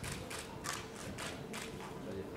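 Light, scattered applause from a few people: separate sharp claps, irregularly spaced at about three to four a second.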